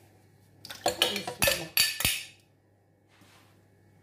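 A metal spoon knocking and clinking against dishes as yogurt is scraped into a blender jar: a quick run of about six sharp knocks, over by about halfway through.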